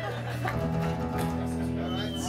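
Live indie rock band music: strummed acoustic guitar with bass holding sustained chords, the chord changing about half a second in.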